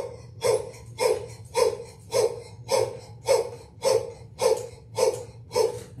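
A man doing rhythmic diaphragmatic breathing while bouncing on a mini-trampoline: short, forceful breaths about twice a second, eleven in all, breathing in on the way up and out on the way down.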